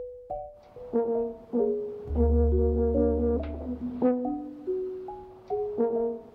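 Marimba music: a melodic run of mallet-struck notes that ring and fade, with a deep low note held for about two seconds in the middle.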